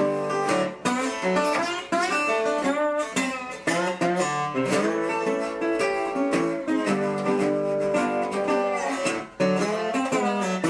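Metal-bodied resonator guitar played solo in a blues style, picked notes with some gliding in pitch and a few short breaks between phrases.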